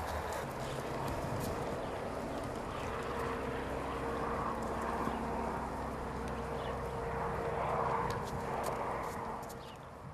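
A steady, engine-like drone with outdoor background noise and a few faint ticks. It fades out near the end.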